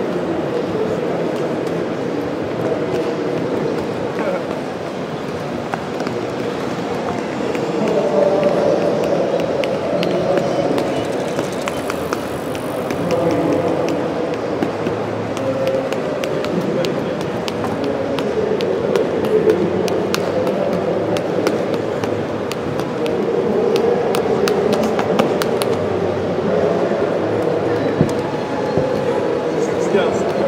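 Indistinct crowd chatter, many voices at once filling a large hall, with scattered light clicks through the middle of the stretch.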